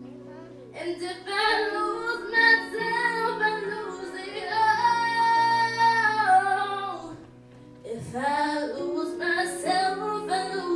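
A girl singing a solo into a handheld microphone over a soft, sustained instrumental accompaniment. She comes in about a second in, holds one long note, breaks off briefly, then sings on.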